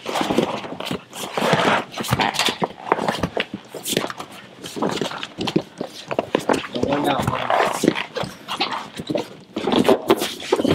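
Two men wrestling in a clinch, breathing hard and grunting with effort. Their clothes and bodies scuff and knock irregularly against padded walls and the mat.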